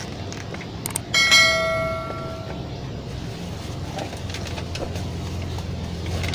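A hard object is knocked once about a second in, giving a sharp clink that rings on with a bell-like tone and fades over a second or so, as rubbish is gathered up. A steady low hum runs underneath.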